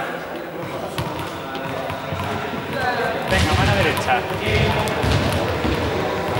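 Indistinct voices echoing in a large sports hall, with thuds of balls bouncing on the floor; the voices and thuds grow louder about halfway through.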